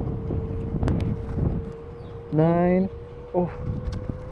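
NIU KQI 2 Pro electric scooter motor whining at one steady pitch while it labours up a steep climb, over wind and road rumble. A voice lets out a short drawn sound past the middle and says 'oh' near the end.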